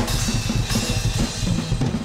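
Live drum kit played in a fast, busy pattern of bass drum, snare and cymbals, with the band's instruments underneath.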